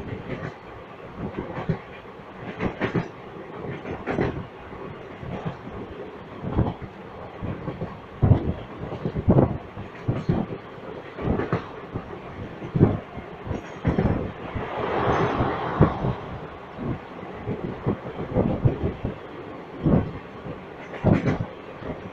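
Moving express train heard from an open coach doorway: steady rolling noise with the clickety-clack of the coach wheels over rail joints, as irregular sharp knocks, and a brief louder rush about two-thirds of the way through.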